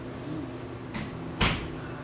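A single sharp knock about one and a half seconds in, with a fainter click just before it, over a steady low hum.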